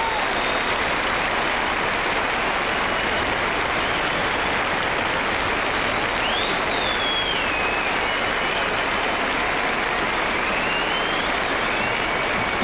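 Concert audience applauding steadily, with a thin high tone wavering up and down over the clapping from about halfway.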